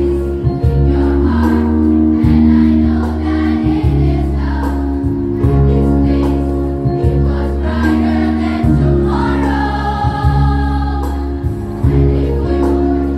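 A choir of girls and women sings together into microphones over a steady instrumental accompaniment of held low notes. The voices grow stronger towards the end.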